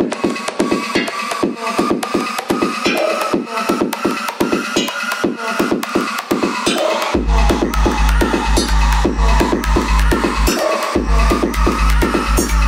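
Electronic bassline track (UK bass house): a fast, even drum beat under a slowly rising synth line, joined about seven seconds in by a heavy sub-bass that drops out briefly near the end.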